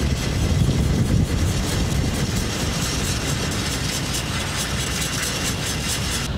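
Steady rumbling wind noise on the microphone, with the faint scraping of a wooden stick stirring two-part JB Weld epoxy on its cardboard card.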